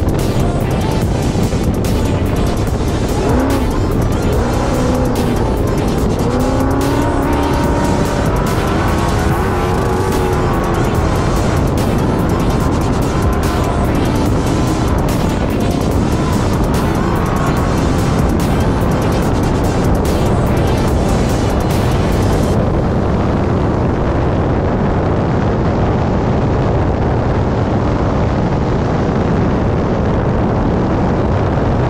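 Trophy Bug off-road race car running at speed over rough desert dirt, heard from on board the car, with background music over it.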